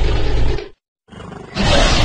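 Creature roar sound effect for a fictional dragon. One roar ends about three-quarters of a second in, and after a brief silence a quieter lead-in rises into another loud roar near the end.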